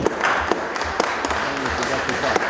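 A roomful of people applauding, with many quick overlapping claps.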